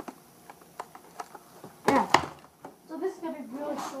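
A Kid Cuisine plastic frozen-dinner tray with its film cover being handled right against the microphone: light clicks and crinkles, then two loud knocks a little under two seconds in. A voice starts near the end.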